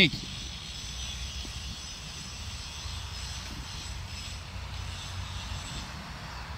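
Outdoor ambience: a steady low rumble of wind on the microphone, with a faint high-pitched hum above it and no distinct strikes or scrapes.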